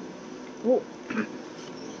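A woman's two short non-word vocal sounds: a brief hum, then a throat clear just after a second in, over faint steady room noise.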